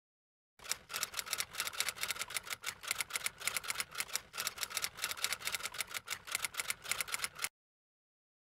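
Typewriter keys clacking in a rapid, uneven run of strikes, several a second, as a typing sound effect. It starts about half a second in and cuts off suddenly near the end.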